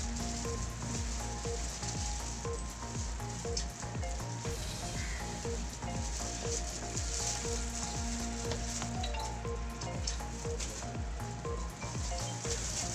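Steady crackling hiss full of fine clicks, with a faint tune of soft repeating notes underneath, a short note recurring about twice a second.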